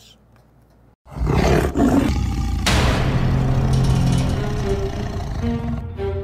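A tiger's roar in a network logo sting, over dramatic music with low sustained tones, bursting in suddenly about a second in after a short quiet.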